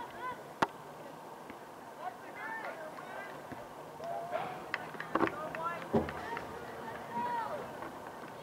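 Scattered distant voices of players and spectators calling out across a soccer field, with three sharp knocks, the last with a low thud.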